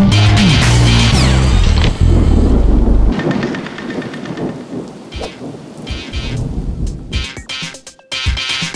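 Upbeat music with a heavy bass line cuts off about three seconds in, giving way to rain and low rumbles of thunder.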